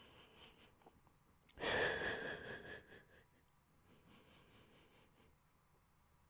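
A person breathing hard while folded forward: one loud breath about a second and a half long, starting near two seconds in, then fainter breathing.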